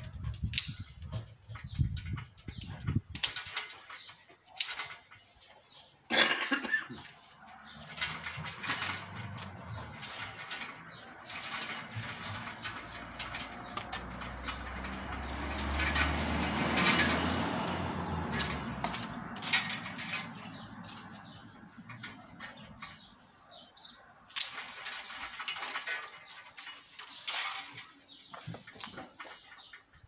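Hand pruning shears snipping dormant grapevine canes in sharp clicks, with a longer stretch of rustling and scraping as the woody canes are handled on the trellis, loudest a little past halfway.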